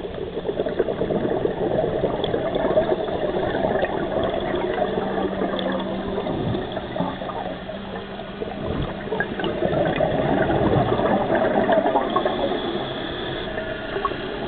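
Water bubbling and rushing in an irregular, noisy stream, swelling louder twice.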